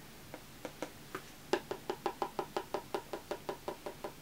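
A makeup brush tapped against an eyeshadow palette: a few scattered taps, then from about a second and a half in a fast, even run of about six or seven taps a second, picking up shadow.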